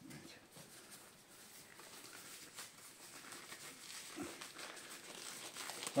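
Faint rustling and crinkling of thin disposable gloves being pulled on and worked down over the fingers.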